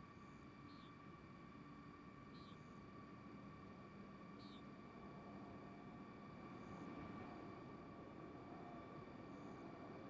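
Near silence: a faint steady hiss with a thin steady hum, and a few faint short high chirps in the first half.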